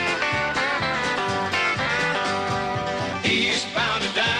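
Background music: an up-tempo country song, in a stretch without singing, with guitar over a steady beat.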